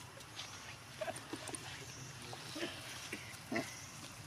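Long-tailed macaques giving a series of short calls, the loudest near the end.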